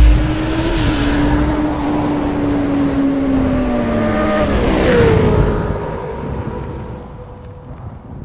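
Motorcycle engine sound effect for an animated intro: a low hit at the start, then a steady high-revving engine note that slowly sags in pitch, drops with a whoosh about five seconds in, and fades away toward the end.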